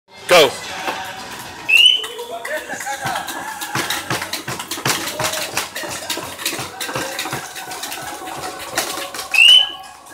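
A pedestal sailing grinder being cranked hard by hand, with irregular clicking and knocking throughout, over shouting voices. Two short rising whistle-like tones sound, one early and one near the end.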